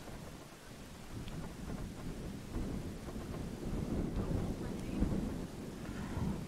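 Wind buffeting the camera's microphone: a low, uneven rumble that grows somewhat louder over the few seconds.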